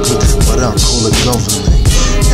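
Hip hop track: a beat with deep bass and regular drum hits, with a rapped vocal over it.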